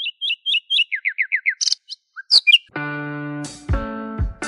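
Bird chirps: a quick run of short high notes, about four a second, then five falling notes and a few sharper calls. Guitar music comes in with a strummed chord about three-quarters of the way through, with low thumps after it.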